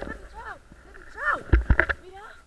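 Short wordless cries from people's voices, each rising and falling in pitch, with gusts of wind buffeting the microphone in heavy low rumbles near the end.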